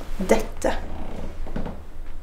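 A person's voice: two short vocal sounds early on and a weaker one later, over a low steady hum.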